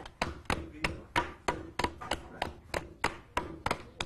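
Two hand mallets beating wet fibre pulp on a stone slab in turn, a steady run of dull thuds at about three strikes a second. The beating shortens the fibres so they will form a sheet of handmade paper.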